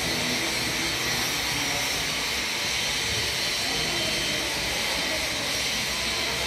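A steady, even rushing hiss with no distinct events, the kind of constant background noise that ventilation or room air makes.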